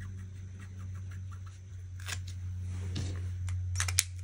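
Faint rustling and a few light taps of a white gel pen working on planner paper and hands on the page, over a steady low hum.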